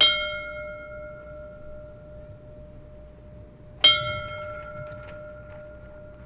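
A ceremonial fire-service bell struck twice, about four seconds apart. Each strike rings out and fades slowly, tolled in a memorial.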